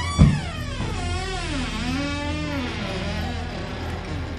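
A door knocks as it swings open, then a long wavering tone glides down and back up, over quiet background music.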